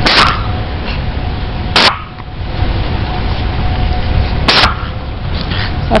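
Storm wind buffeting the camera microphone: a constant low rumble broken by sharp blasts at the start, about two seconds in, about four and a half seconds in, and at the end. Underneath, a faint steady tornado-siren tone holds on.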